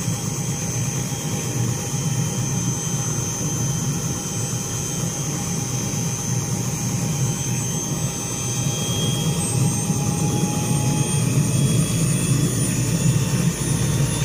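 Light four-seat helicopter running on the ground with its rotor turning: a steady low rotor drone under a high engine whine. It gets slightly louder in the second half as the high whine edges up in pitch.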